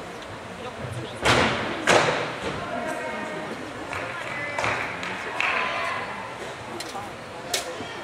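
A gymnast's feet landing on a balance beam: two loud thuds about a second in, half a second apart, then a weaker one midway and a sharp knock near the end, echoing in a large hall with voices in the background.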